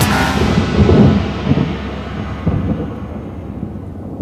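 Electronic dance music fading out in the first second or two, leaving a low rolling rumble of thunder.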